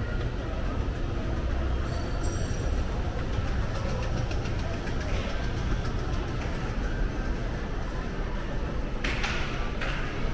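Shopping-mall ambience: a steady low rumble with a murmur of distant voices, and a brief hiss about nine seconds in.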